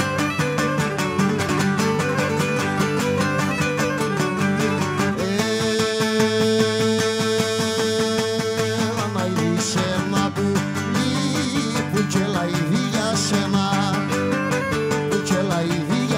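Live Cretan folk music: a bowed Cretan lyra melody over steadily plucked lutes, with a man's voice holding one long note from about five to nine seconds in.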